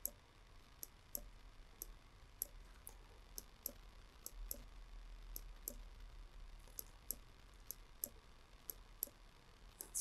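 Faint, irregular clicks of a computer mouse and keyboard, roughly two a second, as entry fields are selected and their values typed over with zeros.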